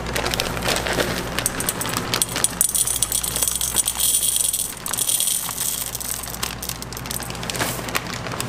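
Small dark chocolate callets poured into a glass bowl: a rapid rattle of little pieces clicking against the glass and each other, densest from about two and a half seconds to five seconds in, then thinning to scattered clicks.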